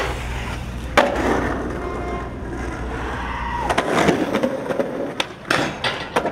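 Skateboard street skating: a sharp clack of the board about a second in, wheels rolling on pavement, then a quick run of clacks and slaps of the board near the end.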